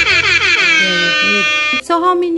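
A loud edited-in sound effect: a held pitched tone that starts abruptly, slides down in pitch and settles. It cuts off near the end and a second, shorter tone follows at once, over soft background music.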